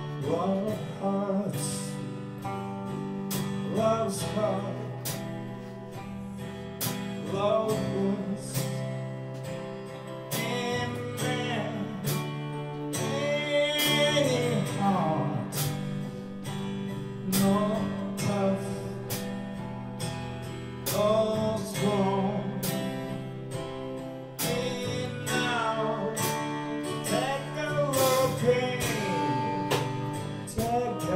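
A live four-piece band playing a slow song: strummed acoustic guitar, electric bass and a drum kit, with a woman singing the melody.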